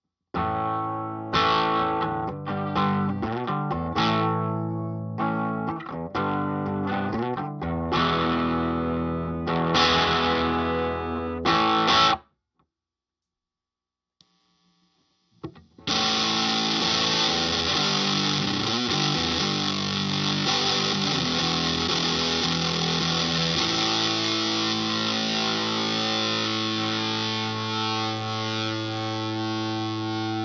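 Electric guitar, a Gibson ES-335, played through a Pigdog Mk1.5 Tone Bender-style fuzz pedal into a Vox AC30 amp. A run of distorted, separately struck chords stops about twelve seconds in. After a few seconds of silence comes more fuzzed playing, ending in a sustained chord that rings out.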